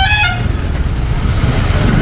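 A vehicle horn sounding in alternating higher and lower notes, cutting off just after the start. It sits over a steady low rumble of motorcycle engine and road noise in slow traffic.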